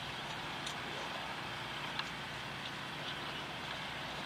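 Steady outdoor background noise, an even rumble and hiss, with a few faint clicks scattered through it.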